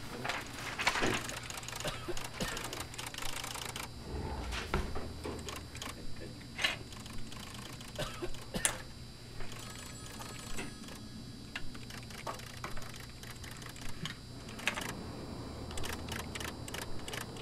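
Irregular light clicks, taps and paper rustling from hands working at a desk, over a low steady hum.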